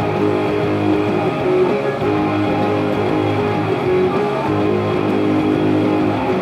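Gibson Les Paul Supreme electric guitar played through a Marshall MG30CFX amp, chords strummed without a break.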